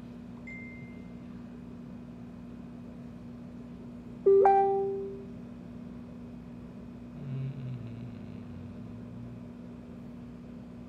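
A single loud plucked-sounding musical note about four seconds in, ringing out and fading over about a second, over a steady low electrical hum.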